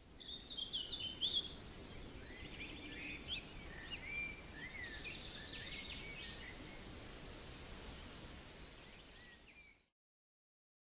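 Several small birds chirping and calling, many short calls with quick pitch glides, over a faint outdoor background hiss. The calls are busiest in the first half and thin out later, and the whole sound cuts off suddenly just before the end.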